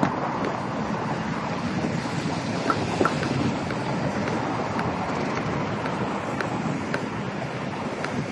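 Steady city street noise of road traffic mixed with wind rushing over a phone's microphone, with a few faint ticks.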